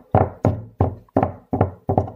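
A steady run of sharp knocks, about three a second, each with a short ringing tail, made by hand.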